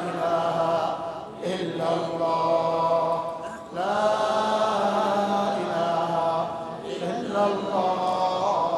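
A man's voice chanting into a close microphone in long, drawn-out melodic phrases, with short breaks for breath about a second and a half, three and a half, and seven seconds in.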